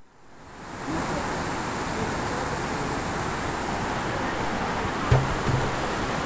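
Steady rushing noise that swells in over the first second, with faint voices behind it and a short low thump about five seconds in.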